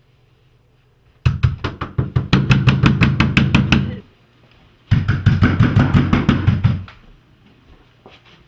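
Rapid, heavy knocking on a door: two long runs of quick strikes, several a second, with a pause of about a second between them.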